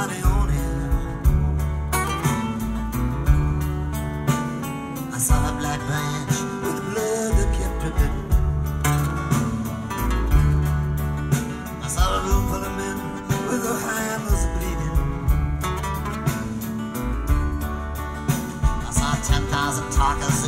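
Live folk-rock band playing an instrumental passage between sung lines: acoustic guitar strumming over bass notes that change every second or two, with drums keeping time.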